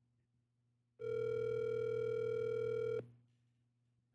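Telephone ringback tone of an outgoing call, played through a mobile phone held up to a microphone: one steady two-second ring about a second in, the call still waiting to be answered.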